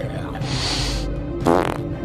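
Cartoon fart sound effect, with a noisy hiss and then a wobbling pitched blast about one and a half seconds in, over music and character vocal noises.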